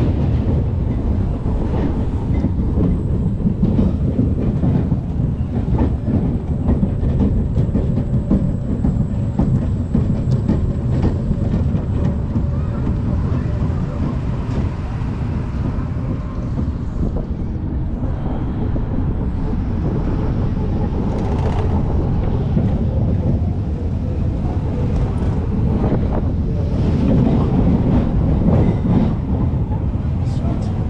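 SBF Visa spinning coaster car rolling along its steel track, a steady loud rumble with a dense clatter of small clicks from the wheels. It eases a little around the middle and swells again near the end.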